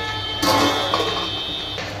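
A short music sting: a chord strikes suddenly about half a second in and rings out, fading away before speech resumes.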